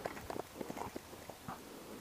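Handling noise as a freshly landed walleye is grabbed off a dry grassy bank: a quick run of light, irregular taps and rustles, mostly in the first second and a half.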